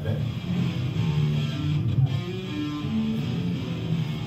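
Electric guitar playing a line of held notes that changes pitch a few times, played back over an exhibit's video loudspeakers.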